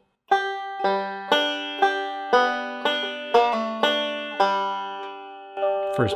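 Five-string banjo picked slowly, one open-string note at a time at about two notes a second, each note ringing on: a measure of Scruggs-style thumb-index-middle rolls with a pull-off from the third to the second fret.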